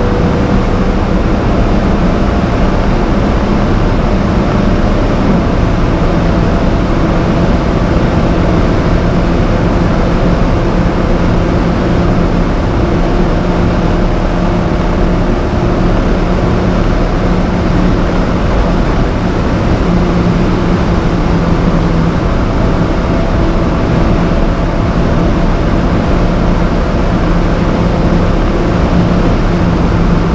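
Alfa Romeo 4C's turbocharged 1.75-litre four-cylinder running hard at about 230–258 km/h, heard from inside the cabin over loud, steady wind and road noise. About five seconds in, the engine note drops as the car shifts from fifth into sixth gear. It then holds a lower, steady note as the car runs at top speed.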